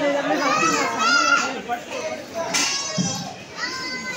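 Children playing and shouting: high-pitched calls and chatter, loudest just over a second in and again about two and a half seconds in.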